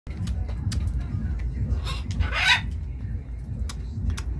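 White cockatoo giving a short, harsh squawk about two seconds in that rises in pitch, with scattered sharp clicks around it.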